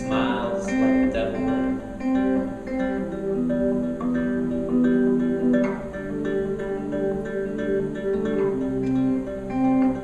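Electric guitar playing slow picked single notes that ring on, the pitch changing about every half second.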